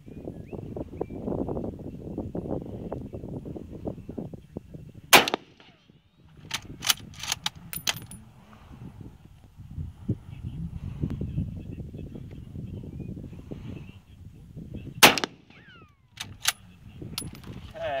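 Two shots from a Mosin Nagant 91/30 bolt-action rifle in 7.62x54R, about ten seconds apart. Each is followed a second or two later by a run of sharp metallic clicks as the bolt is worked to eject the case and chamber the next round.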